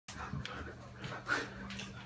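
A dog and a person running round a house: irregular thuds of running feet and paws on the floor, mixed with sounds from the dog.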